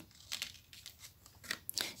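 Tarot cards handled and slid over a cloth-covered table: a few faint, brief rustles and clicks of card stock, a little more about a second and a half in.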